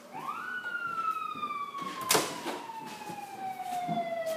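An emergency vehicle siren wailing: one quick rise in pitch, then a slow, steady fall. A sharp knock sounds about two seconds in.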